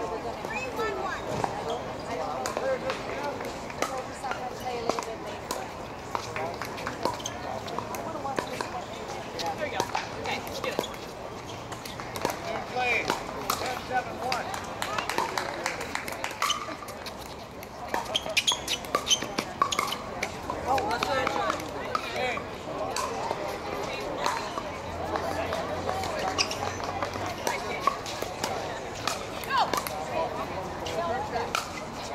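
Many people talking at once across the pickleball courts, with sharp pocks of paddles striking plastic pickleballs scattered throughout.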